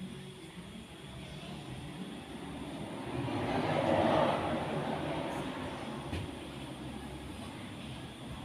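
A passing vehicle: its noise swells to its loudest about halfway through and then fades away.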